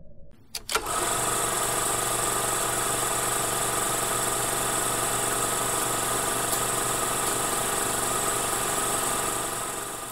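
Film projector sound effect: a couple of clicks as it starts, then a steady whirring clatter that fades out near the end.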